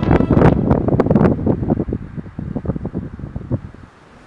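Wind buffeting the microphone: a gusty low rumble with irregular bumps that dies away over the few seconds.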